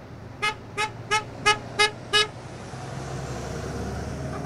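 A passing vehicle's horn honking six quick, evenly spaced toots, about three a second, in support of the farmers' protest as the roadside signs ask. A vehicle engine rumbles steadily underneath and grows a little louder after the honking.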